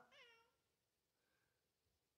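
A domestic cat gives a short, faint meow that falls in pitch, in the first half second; the rest is near silence.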